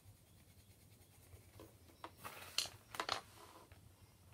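Faint quiet, then a short cluster of scratchy rustles and light ticks between about two and three and a half seconds in: coloured pencils and paper being handled at a drawing session.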